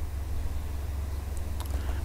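Steady low hum of background noise with a faint hiss, and a couple of faint clicks near the end.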